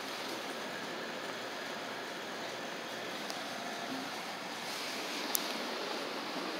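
Steady background noise of an underground subway station at platform level, with a few light clicks, the sharpest a little past five seconds in.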